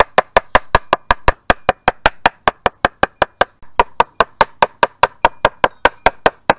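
Small metal hammer tapping rapidly and steadily, about five blows a second, on paper laid over a leaf and petals on a wooden breadboard, bashing the plant dye out into the paper.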